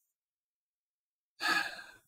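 A man's single short, breathy sigh about a second and a half in, after silence.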